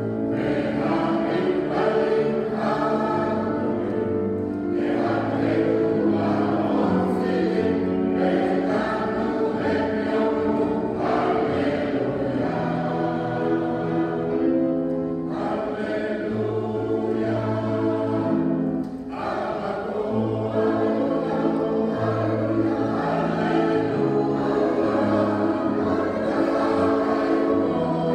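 Mixed choir of men's and women's voices singing in parts, with piano accompaniment. There is a brief drop in level between phrases about nineteen seconds in.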